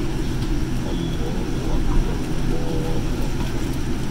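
Steady low rumble of the passenger cabin of a Boeing 787-9 airliner, with faint voices in the background.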